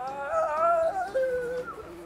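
Background music: a melodic lead line of sliding, wavering notes over a steadier accompaniment, loudest in the first second.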